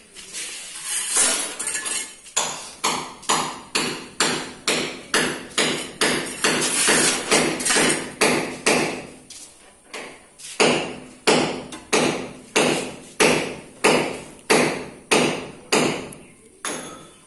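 Repeated hammer blows, about two a second, in a steady run with a short pause about ten seconds in.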